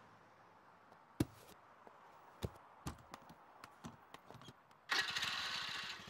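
A few sharp clicks, then a motor scooter's engine starting up about five seconds in, with a sudden noisy burst that settles into a low running pulse.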